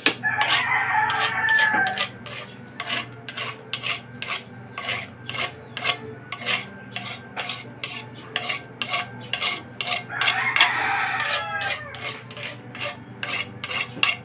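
Wooden paddle scraping and stirring ice cream mix against the inside of a metal canister of a hand-churned ice cream maker, in regular strokes about three a second. A rooster crows twice, about a second in and again around ten seconds in.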